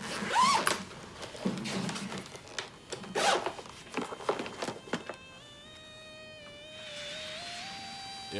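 Rummaging in a fabric bag: rustling, a zip pulled and a few light knocks and clicks. About five seconds in, soft background music of held notes that step slowly in pitch takes over.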